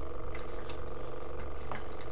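Homemade capacitor pulse motor running: a steady low hum with a few faint, irregular ticks.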